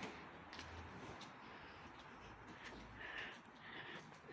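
Near silence: faint room hiss with a few soft clicks.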